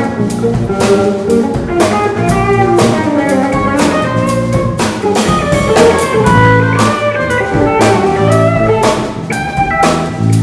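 Live instrumental rock-jazz band: electric guitars playing over a drum kit, with a steady beat of drum and cymbal hits and low sustained notes underneath.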